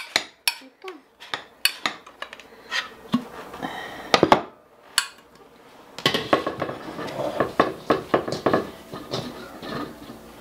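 Sharp metallic clicks and clatters as a LEM jerky gun is taken apart and its plunger-and-trigger assembly is set down on the counter, then busier handling noise from hands working in a stainless steel mixing bowl from about six seconds in.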